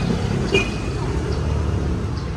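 Motor scooters riding past on a street: steady low engine and road noise.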